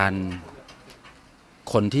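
A man speaking Thai: a drawn-out low syllable, a pause of about a second, then his speech resumes near the end.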